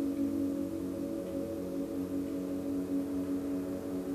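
Soft ambient background music of a few sustained, ringing tones that waver slowly, with a singing-bowl-like timbre.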